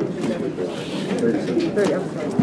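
Several people talking indistinctly at once in a room, with no single clear voice.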